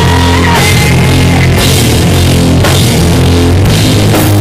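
Heavy rock band playing live: distorted electric guitar, bass and a drum kit with crashing cymbals, recorded loud and overloaded.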